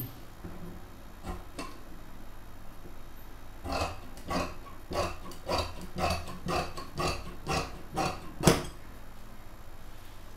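Large dressmaker's shears cutting through fabric on a table: a run of short crisp snips, about two or three a second, starting a few seconds in, the loudest one near the end.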